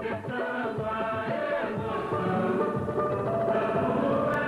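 A political campaign jingle playing: voices singing over a backing band.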